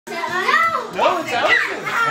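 Children's voices, loud and excited, calling out during a game.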